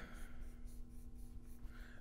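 Faint strokes of a dry-erase marker drawing on a whiteboard, over a low steady hum.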